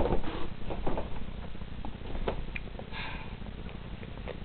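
Typing on a laptop keyboard: scattered light key clicks over a steady low hum, with a short breathy sniff about three seconds in.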